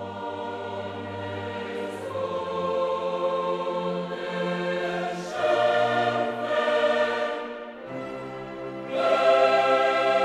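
Background choral music: sustained, slow chords from a choir with orchestral backing, swelling louder about five and a half seconds in and again near nine seconds.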